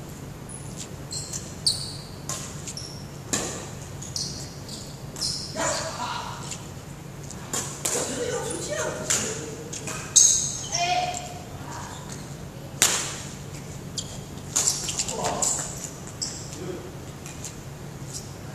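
Badminton rally: racket strings striking a shuttlecock with sharp, short cracks every second or two, mixed with sneakers squeaking and feet landing on a wooden court. A steady low hum runs underneath.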